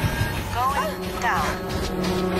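Film trailer soundtrack: a music bed with two short gliding, voice-like cries in the middle, then a steady droning hum of several held tones.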